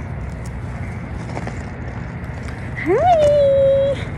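A single high-pitched vocal call about three seconds in: the voice slides quickly upward, then holds one high note for about a second before stopping, over a steady low outdoor rumble.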